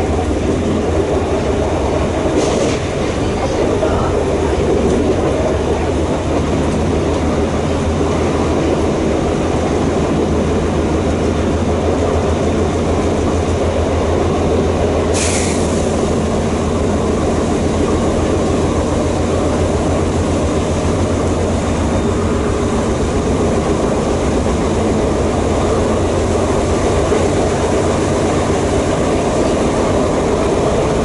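A moving train heard from inside the carriage: a steady rumble of wheels on rail. Two brief high-pitched hisses cut through it, a faint one near the start and a louder one about halfway through.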